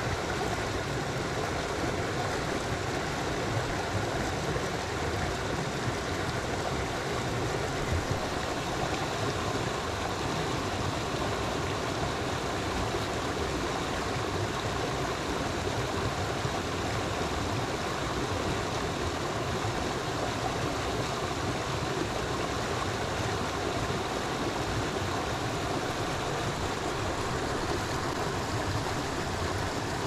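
Steady rush of flowing stream water, an even noise without breaks.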